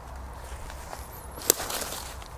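Footsteps and rustling in dry leaf litter, with one sharp crack about one and a half seconds in, the loudest moment, followed by a brief rustle.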